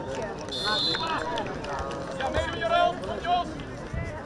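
Young players and onlookers shouting and calling out around a football pitch, with a short, shrill referee's whistle blast about half a second in.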